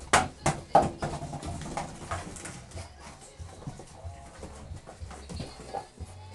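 An empty plastic pop bottle being chewed and batted about a wooden floor by springer spaniel puppies: a few sharp hollow knocks in the first second, then softer crinkling and scuffling as they wrestle over it.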